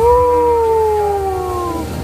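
A single long cry from a person's voice, sweeping up sharply and then sliding slowly down in pitch for almost two seconds before breaking off near the end, over quieter background music.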